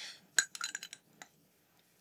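Light glassy clinks of hydrometer gear being handled: one sharp clink about half a second in, a few smaller taps after it, and one more a little past a second.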